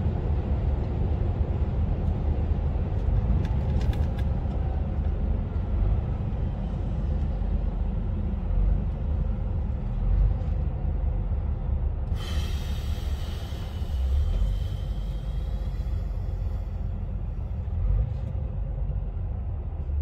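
Truck cab interior while driving: steady low engine and road rumble. About twelve seconds in, a high whine with a hiss starts suddenly and fades out over a few seconds.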